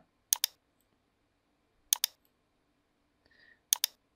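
Computer mouse button clicked three times, each a quick press-and-release pair of sharp clicks, spaced over about three and a half seconds.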